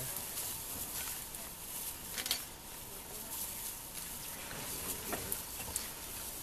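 African wild dogs feeding on an impala carcass: faint tearing and chewing with a few sharp snaps, over a steady background hiss.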